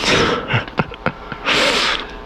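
Two short, breathy, snort-like bursts of air close to a microphone: one at the start and a louder one about one and a half seconds in.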